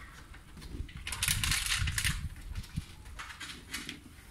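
Window tint film rustling and rubbing as it is handled and smoothed by hand against car door glass, in noisy bursts: a longer spell about a second in and shorter ones near the end.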